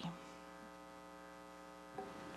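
Faint, steady electrical mains hum: a stack of even, unchanging tones in the room's sound and recording system, with no voices.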